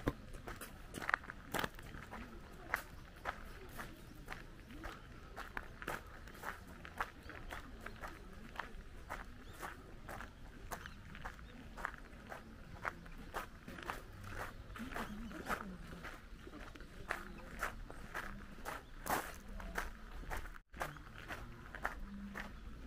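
Footsteps crunching on a fine gravel path at a steady walking pace, about two steps a second. The sound drops out for an instant near the end.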